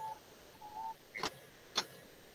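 A quiet pause on a video-call line: a faint brief tone in the first second, then two short clicks about half a second apart.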